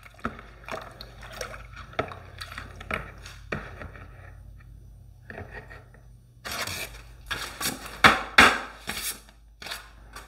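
A stir stick scraping and sloshing through mixed paint in a plastic mixing cup, in soft irregular strokes over a low steady hum. From about six and a half seconds in, louder crinkling rustle of a paper paint strainer cone being pulled off the wall and opened.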